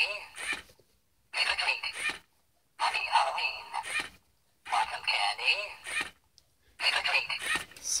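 Animated Halloween candy bowl triggered several times in quick succession, its small built-in speaker playing short recorded voice phrases, about five in a row with brief silences between. The voice sounds thin and tinny, with little bass.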